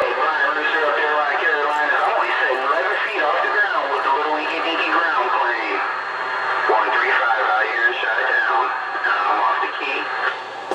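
Distant CB radio skip voices coming through the receiver's speaker: thin, band-limited talk that is too garbled to make out, with faint steady whistle tones under it.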